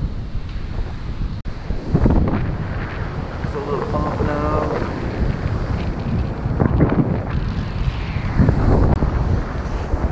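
Wind buffeting the microphone in gusts, over the rush of ocean surf on a beach.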